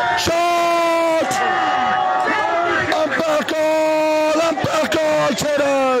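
A man's voice shouting in long, drawn-out calls, each held for about a second, over the noise of a crowd.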